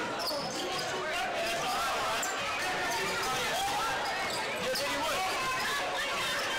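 Basketball dribbled on a hardwood gym floor, short bounces heard over the steady, indistinct chatter of spectators in a large gymnasium.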